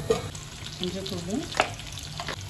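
Yam slices frying in oil in an iron kadai with a steady sizzle, broken by a few sharp metal clinks, the loudest about one and a half seconds in.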